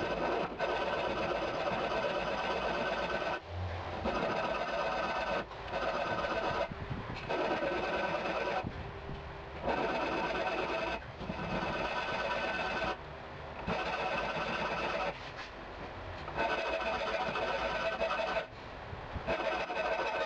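Hand file scraping along a steel knife blade held in a vise: about nine long strokes of one to three seconds each, with short pauses between them, each stroke carrying a steady metallic ring.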